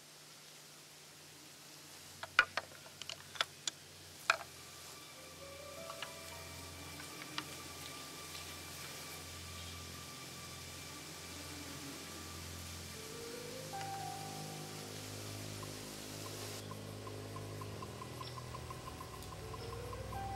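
A few sharp, irregular clacks of deer antlers being rattled together, then faint background music that slowly swells.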